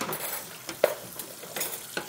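Cutlery and dishes clinking and clattering, with one sharp clink a little under a second in.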